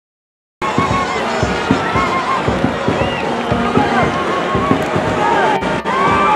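Football stadium crowd noise: many overlapping voices shouting and chanting, cutting in abruptly under a second in after dead silence, with two very brief dropouts near the end.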